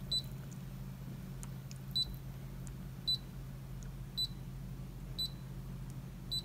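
Brother ScanNCut DX touchscreen beeping as a stylus presses its on-screen buttons: five short, high electronic beeps about a second apart, with a few faint taps between them, over a steady low hum.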